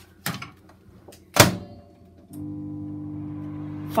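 Microwave oven: a light knock, then the door is shut with a loud thunk about one and a half seconds in, and a moment later the oven starts and runs with a steady hum.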